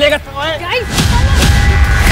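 A spoken line ends, then about a second in a loud, deep rumbling boom with rapid crackling hits starts and keeps going, with a held tone over it: trailer sound design and music.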